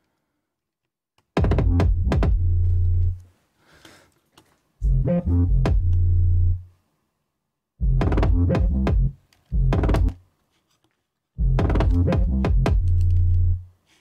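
Playback of a hip-hop drill beat's kick drum together with a sustained 808 bass. The kick is processed with saturation, a clipper and an EQ boost in the highs. It plays in several short phrases of about one to two seconds with silent gaps between them.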